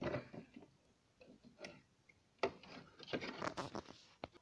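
Handling noise from things being shifted in a cramped storage space: irregular scrapes and knocks of wooden poles and other items, one at the very start and a cluster of them in the second half.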